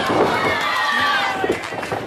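Small live crowd yelling and shouting in many overlapping voices, with a thud about one and a half seconds in as a wrestler is slammed onto the ring mat.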